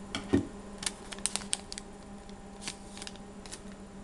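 Trading card packs and cards being handled on a desk: a run of light clicks and rustles, mostly in the first two seconds, with a soft thump about a third of a second in. A steady low hum runs underneath.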